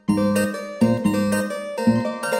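Bass guitar notes from the Spectrasonics Trilian software instrument, playing three plucked notes about a second apart, each ringing and fading before the next.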